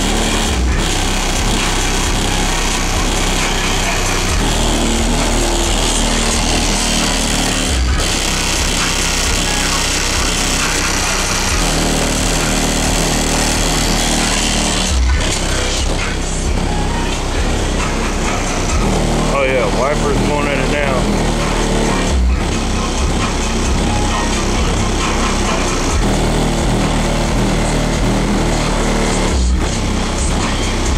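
Loud bass-heavy music with vocals played through a van's car-audio system with DC Audio Level 4 XL 15 subwoofers, heard from outside the van. The bass notes change about once a second, and the music drops out briefly about every seven seconds.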